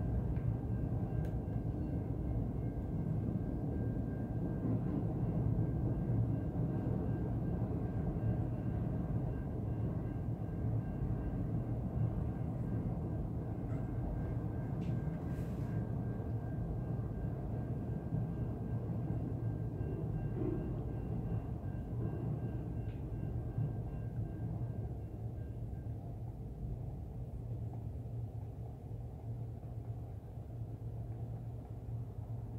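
Low, steady rumble of a train passing, easing off near the end.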